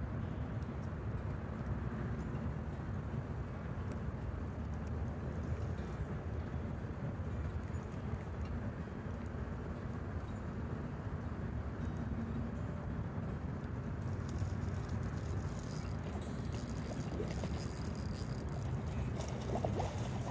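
Steady low rumbling outdoor background noise, with faint light crackles in the second half.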